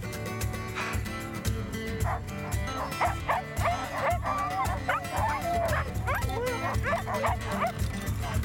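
A dog whining and whimpering in high, wavering cries that start about two seconds in and run until near the end, over background score music.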